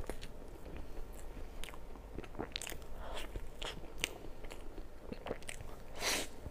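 A person biting and chewing mouthfuls of mille crêpe cake, with irregular short, sharp mouth clicks throughout.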